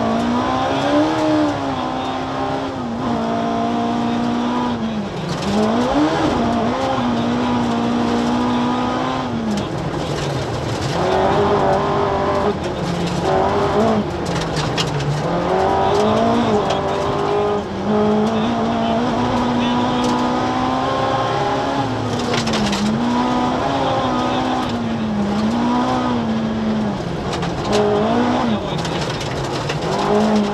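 The Cosworth BDA twin-cam four-cylinder engine of a Ford Escort RS 2000 rally car, hard on the throttle on a gravel stage, heard from inside the cabin. The revs keep rising and falling with lifts and gear changes, over steady tyre and gravel noise.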